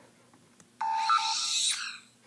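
Short electronic sound effect from a jailbroken iPod touch as its lock screen is unlocked: about a second of steady beeps under a rising sweep, starting just before the middle.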